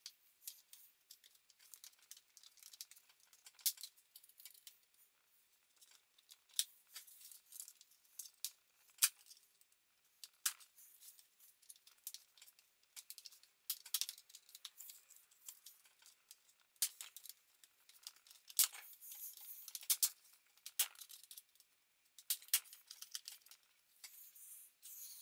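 Faint, irregular clicks and short scrapes of plastic as a guitar pick is worked along the seam of an Acer laptop's screen bezel, popping its snap-in clips loose.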